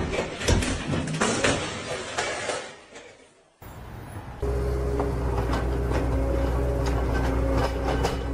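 Clatter and several sharp knocks as a large sheet is shifted over wooden pallets beside a forklift, fading out after about three seconds. After a short quieter stretch, a steady low drone with a few held tones begins about halfway through and continues.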